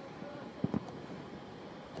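Faint outdoor ambience from a football pitch: a steady low hiss with two short dull thuds a little over half a second in.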